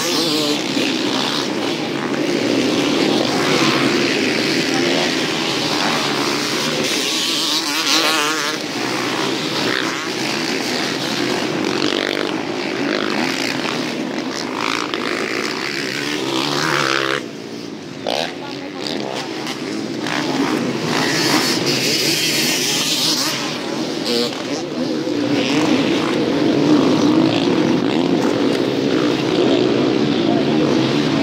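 Several motocross motorcycles running and revving around a dirt track, their engine notes rising and falling as they ride past, with a short lull about seventeen seconds in.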